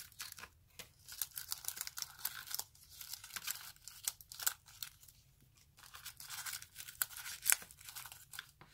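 Rolls of nail transfer foil being handled and shuffled in a plastic storage box: irregular crinkling of the thin foil with many sharp little clicks of nails and foil rolls against the plastic.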